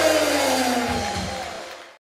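Live band ending a song: the last chord and a held note ring on, sliding slightly down in pitch, with a couple of drum hits about a second in, then fading away.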